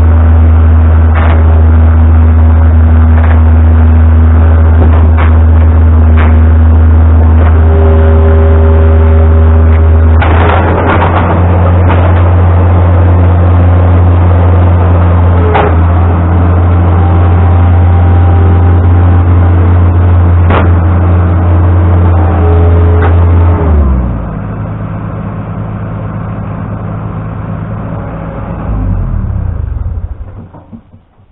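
New Holland LX665 Turbo skid steer's diesel engine running at high throttle while the machine moves, with scattered knocks and clanks. About three-quarters of the way in it drops to a lower idle, picks up briefly just before the end, then dies away.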